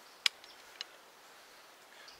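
Two sharp clicks about half a second apart, the second fainter, from handling the lock of a percussion muzzleloader.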